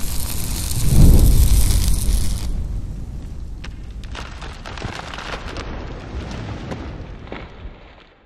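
Cinematic logo-reveal sound effect: a hissing rush that swells into a deep boom about a second in, followed by scattered crackling like burning sparks that fades out near the end.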